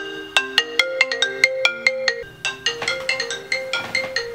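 iPhone ringtone ringing for an incoming call: a bright, mallet-like melody of quick notes, the phrase repeating about every two seconds.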